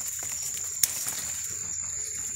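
Handling noise and soft rustling of bean vine leaves, with one sharp click about a second in, over a steady high-pitched tone.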